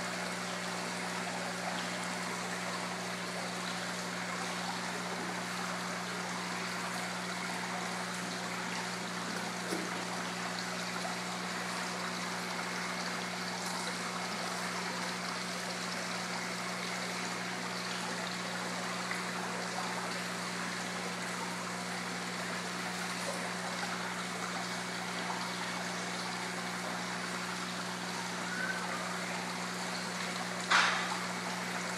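Water from a small rock waterfall trickling steadily into an indoor koi pond, with a steady low hum underneath.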